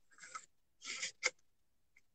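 Three faint, short rustling scrapes, as of objects being handled.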